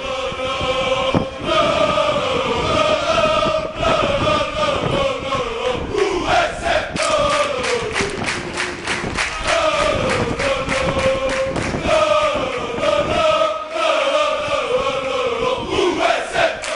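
Football ultras chanting in unison, a loud crowd of male voices repeating a short falling melody. Rhythmic hand-clapping joins in the middle of the chant.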